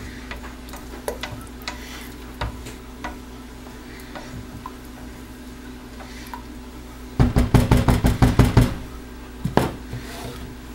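Silicone spatula scraping the sides of a stainless steel stock pot of soap batter, with faint scrapes and clicks, then a quick run of loud knocks on the pot about seven seconds in and one more knock near the end.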